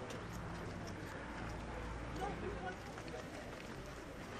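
Footsteps of a group of people walking on stone paving, with faint voices and a steady low rumble behind.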